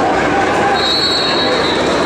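Spectators in a gym talking and calling out, with a thin, high, steady tone that starts about a second in and fades out before the end.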